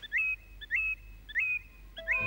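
A bird calling four times, evenly spaced a little over half a second apart, each call a quick rising whistle that settles on one held note.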